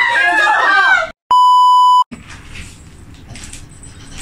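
An edited-in censor bleep: a single loud, steady 1 kHz beep lasting under a second, dropped in after a moment of dead silence, cutting off laughing chatter.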